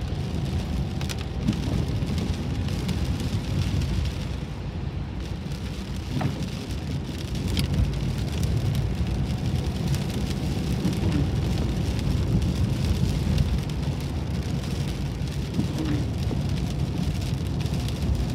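Rain hitting a moving car's roof and windscreen, with scattered sharp drop ticks, over a steady low rumble of engine and tyres on a wet road, heard from inside the cabin.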